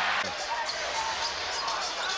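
Crowd noise in a basketball arena during live NBA play, heard through an old TV broadcast, with a short burst of noise right at the start.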